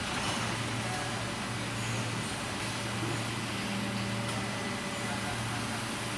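Steady low hum and hiss of a running plastic injection moulding machine in a factory hall, constant with no strokes or breaks.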